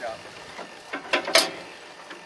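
Metal clanking and clicking from an Iron Age horse-drawn potato planter's mechanism as it is pulled along, with a couple of sharp knocks about a second in.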